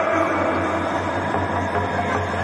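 Traditional Burmese Lethwei ring music, a reedy hne oboe line over steady arena crowd noise.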